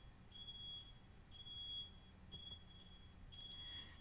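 Near silence: a faint high-pitched steady tone pulses on and off about once a second over a low hum in the recording's background.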